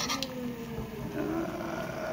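Chopsticks click against the wok a few times at the start. Then a person's voice holds a low hum that slowly falls in pitch for about a second.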